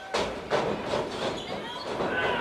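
Pro wrestling ring action: two sharp impacts in the first half second, from wrestlers striking and hitting each other in the ring, followed by spectators' voices calling out.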